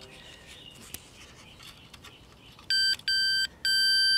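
Digital multimeter's continuity beeper: two short high beeps, then a steady beep from a little before the end as the probes sit across a shorted zener diode.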